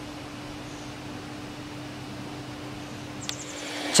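A steady low mechanical hum over an even hiss, with a short click about three seconds in.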